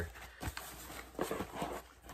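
Faint knocks and scuffs of a small cardboard shipping box being handled and set down, a few light taps about half a second in and again around a second and a half in.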